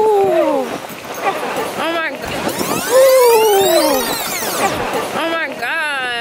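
A woman's voice making two long falling calls, one at the start and another about three seconds later, with shorter cries in between and near the end.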